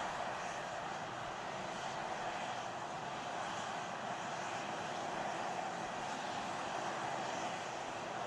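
Steady, unbroken rushing noise with a faint low hum, picked up by the onboard camera on the Super Heavy booster held in the launch tower's catch arms.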